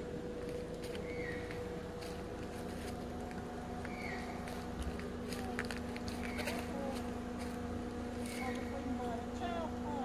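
Forest ambience: a steady low hum runs under short high chirps that repeat every couple of seconds, with faint twittering calls and light rustles or clicks in the second half.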